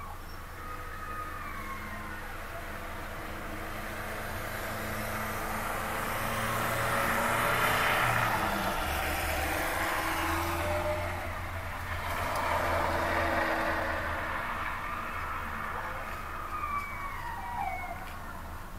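Motor vehicles driving past on a town street, with low engine tones. One swells to its loudest about eight seconds in, and another passes around thirteen seconds. A few short gliding tones come near the start and near the end.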